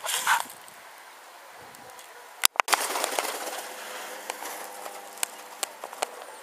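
Pigeons, with a short loud burst of sound just after the start. About two and a half seconds in the recording drops out, and then comes a steady rushing noise with many scattered sharp clicks.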